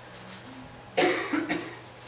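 A man coughs twice in quick succession into a microphone, about a second in.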